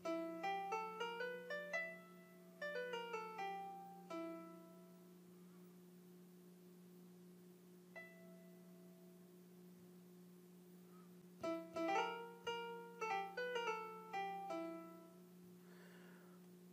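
GarageBand for iPad's Grand Piano sound played by sliding across the keys in glissando mode, giving quick runs of notes from the minor blues scale. A rising run and then a falling run come first, a single note about eight seconds in, and several more quick runs near the end, over a faint steady hum.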